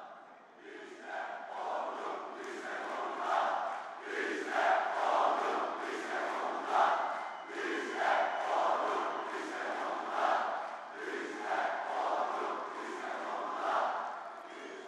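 A large audience chanting together in rhythm. The sound rises about a second in, then swells and falls in regular repeated phrases.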